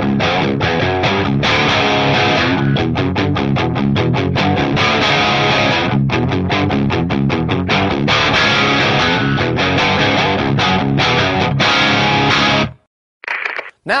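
Distorted electric guitar played through amp distortion alone, with the MXR Wylde Overdrive pedal bypassed: heavy riffs with bursts of rapid picked notes. The playing stops abruptly about a second before the end.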